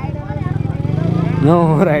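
Motorcycle engine running steadily at low revs, heard from on the bike.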